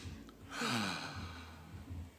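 A man's breathy, laughing exhale, starting about half a second in, its pitch falling as it trails off.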